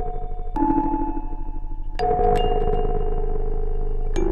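A melodic sample played through a Bastl Neo Trinity module: dark, sample-rate-reduced and aliased, with its LFOs running at audio rate as VCAs to give a ring-modulated sound. A new note comes in about half a second in and another at two seconds, with a fast wobble in loudness throughout.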